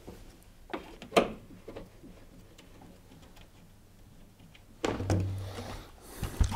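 A couple of light clicks as the screws holding an LG tumble dryer's sheet-metal top panel are taken out. Near the end the top panel slides back and lifts off with a scrape.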